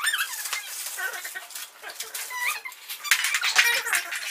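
Paper gift bag and wrapping rustling and crinkling as a present is pulled out, busiest near the end, with a few brief high squeaks.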